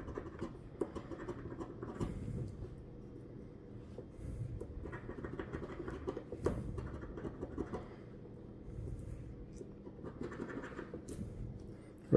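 A large metal coin scraping the scratch-off coating from a paper lottery ticket, in irregular runs of short strokes with small clicks.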